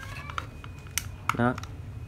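Light plastic clicks and taps from handling an unpowered TOTAL TG10710026 angle grinder and its thumb slide switch, with one sharper click about halfway through; the motor is not running.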